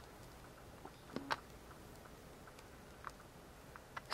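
Quiet room tone with a few faint, short clicks: two close together a little over a second in and another about three seconds in.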